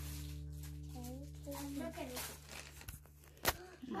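Rustling and tearing-like handling of a present's packaging and a fluffy pink jacket, with faint voices and a steady low hum that fades out; a single sharp click about three and a half seconds in.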